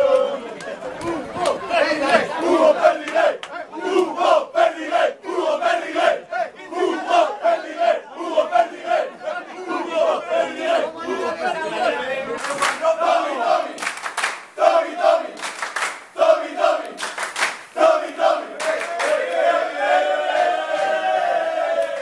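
A group of football players chanting and shouting together in rhythm in a celebration huddle, with several sharp cracks among the voices in the second half.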